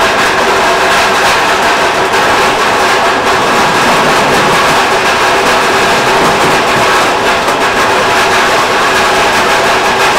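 A golf-ball handling machine running with a loud, steady mechanical din as the range balls rattle through it.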